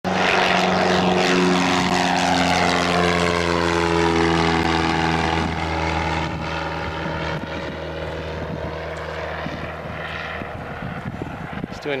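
Single propeller towplane's piston engine running at climb power as it tows a glider past, its pitch falling as it goes by and the sound slowly fading as it climbs away.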